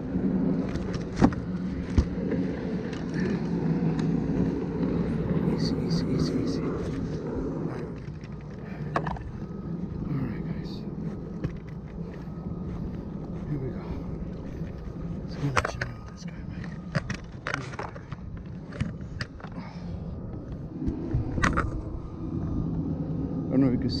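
Scattered clicks and knocks of gear being handled on a plastic kayak, including a yellow plastic measuring board set out for a fish, over a steady low rumble. The rumble is strong for the first eight seconds or so, fades, and comes back near the end.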